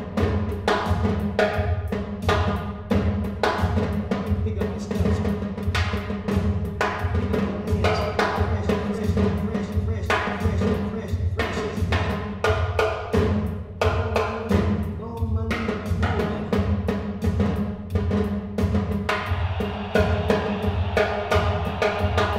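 Solo drums played with sticks on a multi-percussion setup, a dense run of quick, sharp strokes, over a steady low drone.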